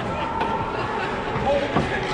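Indistinct chatter of many voices at a youth ice hockey game, with one sharp knock about three-quarters of the way through.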